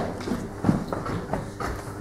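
Footsteps and a handful of light knocks as pupils move about the classroom.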